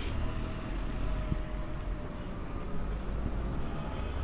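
Steady low rumble of city road traffic, with a faint engine tone that slowly sinks in pitch as a vehicle passes.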